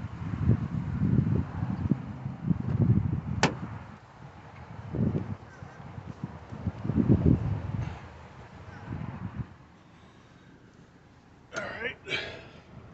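Handling noise from a camera being carried while a tripod is packed into a car: irregular low rumbles and knocks, with one sharp click about three and a half seconds in.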